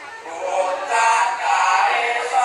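Traditional Javanese reog accompaniment music with a pitched melody line over it. It is briefly quieter at the start and swells back about half a second in.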